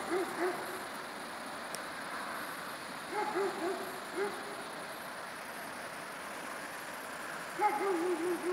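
A distant animal calling in short, clear notes in quick runs of three or four, repeated several times, over a faint steady high hiss.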